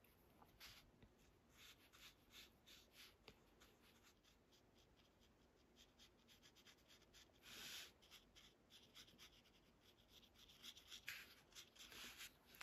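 Near silence, with faint short strokes of a small wet paintbrush brushing on a paper tile, and one slightly longer stroke about seven and a half seconds in.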